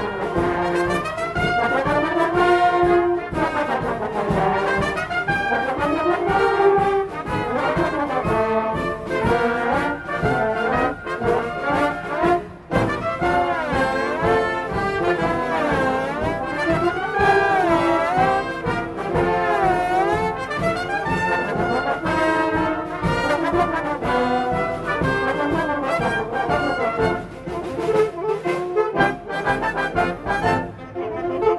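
Wind band playing a lively piece with the brass to the fore, trombones and trumpets carrying the melody. The music briefly drops away about twelve seconds in, then carries on.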